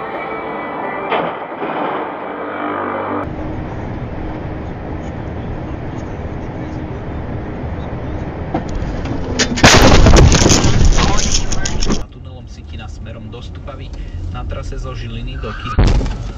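Road noise from a moving car picked up by a dashcam. About ten seconds in comes a sudden, very loud vehicle collision lasting about two seconds, which cuts off abruptly.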